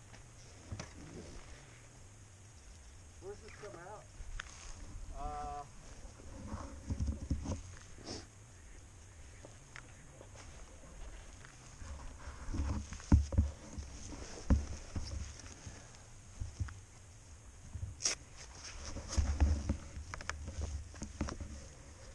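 Low rumble on a helmet-mounted camera's microphone, with faint distant voices a few seconds in. Past the middle come a run of sharp knocks and rubs as a gloved hand handles the helmet.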